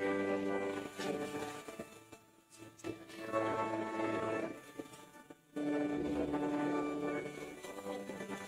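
Church music: a small worship group singing a hymn in phrases of held notes, with two short breaks, about two seconds in and about five seconds in. The sound is thinned and dulled by an over-aggressive noise suppression filter on the stream.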